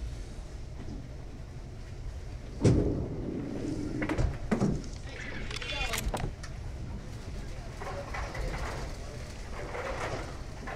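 A candlepin bowling ball rolled down the lane: a loud knock and clatter of ball against wooden candlepins about three seconds in, followed by a few lighter knocks, over background voices.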